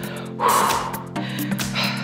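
Background music, with a forceful breathy exhale from the exerciser lasting about half a second, starting about half a second in.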